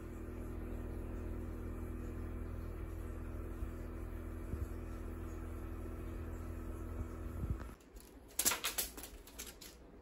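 A steady low electrical hum that cuts off about three-quarters of the way in, followed shortly by a quick run of sharp clicks.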